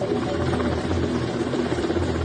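A large military helicopter passing low overhead: a loud, steady rotor and turbine roar with a low rumble that swells and fades.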